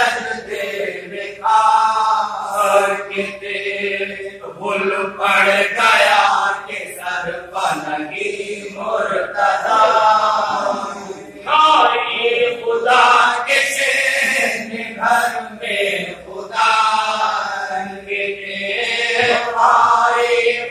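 Men chanting a marsiya, an Urdu elegy of mourning, in long melodic phrases of held, wavering notes separated by short breaks.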